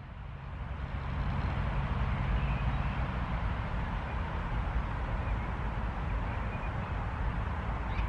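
Steady outdoor background noise between words: a low rumble under a soft hiss, with no distinct events, swelling slightly over the first second.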